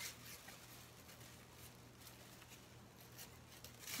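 Faint, scattered snips of dull scissors cutting a thin plastic grocery bag, with light plastic rustling.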